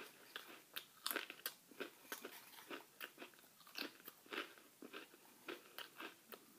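Crackers being crunched and chewed: a faint, irregular string of short crisp crunches, about one or two a second.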